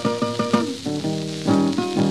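Fingerpicked acoustic guitar playing a blues introduction, with plucked bass notes under quick treble figures. It is heard through the hiss and crackle of a 1936 shellac record's surface.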